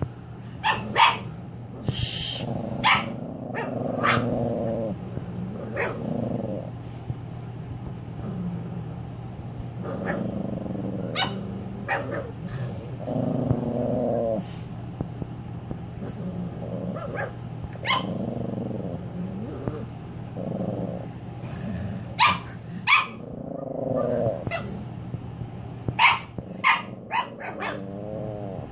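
Cavalier King Charles Spaniel puppy growling from inside her wire crate: a string of growls about a second each, rising and falling in pitch, every couple of seconds, with sharp short clicks in between. It is defensive growling at an unfamiliar dog approaching the crate. A steady low hum runs underneath.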